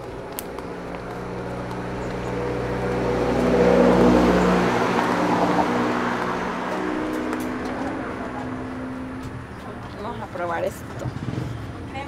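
A road vehicle passing by on the highway: it builds to its loudest about four seconds in, its engine note drops in pitch as it goes past, and it then fades away slowly.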